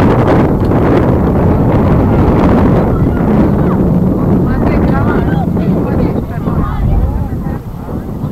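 Wind buffeting the microphone in a loud, low rumble, with distant shouting voices of players and spectators on the field. The rumble eases slightly near the end.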